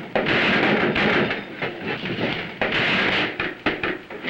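A scuffle between men: repeated surges of rustling, shuffling and grappling noise, with a few sharp knocks near the end.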